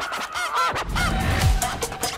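Film-trailer soundtrack of music and action sound effects, with several short, honk-like squawking tones in the first second and a low, swelling impact about one and a half seconds in.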